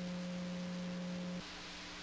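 A steady, low electronic tone held over a faint hiss. About one and a half seconds in it drops a little in level, and a second, slightly higher tone carries on with it.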